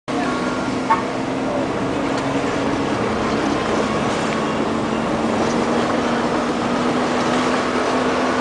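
Steady drone of a car's engine and tyres heard from inside the moving car, with a constant low hum running under it. A single short click about a second in.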